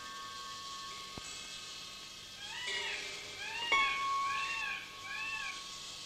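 A run of short mewing animal calls, each rising then falling in pitch, about one every half second through the second half. Underneath are soft held instrument tones, a sharp click just over a second in, and a struck note about two-thirds of the way through.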